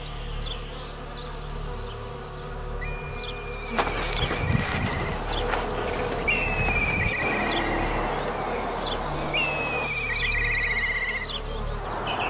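A steady, high-pitched insect buzz, with a short call repeated three times about three seconds apart: each call is a held note that breaks into a quick trill.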